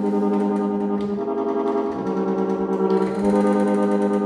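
Free-reed harmonium, attributed to Christophe & Etienne of Paris c.1868, playing a short phrase of held notes on its clarinet stop with the tremolo drawn, the reedy tone shaken by a rapid vibrating pulse. The notes change about a second in, at two seconds and again a little after three seconds.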